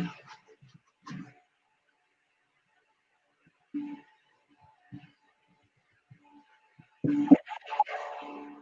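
Mostly quiet room, broken by a few short, soft vocal sounds, then a brief burst of a person's voice about seven seconds in.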